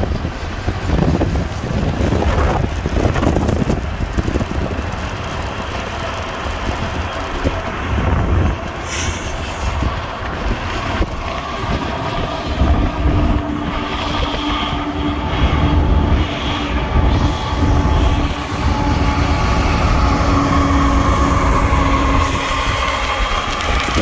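Freight trains rolling past close by: steady rumble of steel wheels on rail. In the second half, while the Norfolk Southern diesel locomotives are alongside, a steady whine rides over the rumble.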